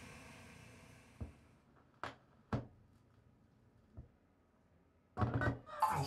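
Four faint, short knocks and thunks spaced irregularly over a few seconds, the second and third sharper and clickier than the others, like objects being handled at a desk.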